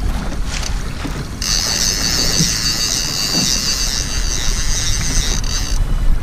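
Boat motor rumble and wind on the microphone, with a fishing reel's steady high whirr from about a second and a half in until just before the end, while a heavy fish is hooked on the bent rod.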